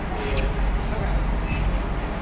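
Steady low rumble of a car idling, heard from inside the cabin, with a faint voice briefly near the start.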